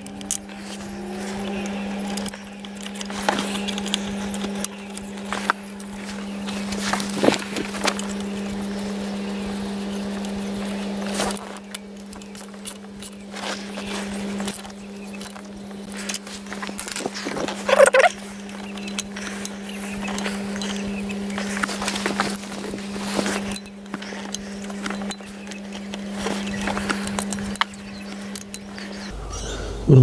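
Scattered metallic clicks and clinks from hand tools and parts as a ratchet and socket is worked on a fuel injector being fitted in an engine bay, over a steady low hum that cuts off shortly before the end.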